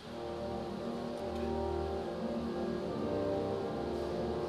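Sanus two-manual, 27-stop organ playing sustained chords over a low bass, the chords changing a few times.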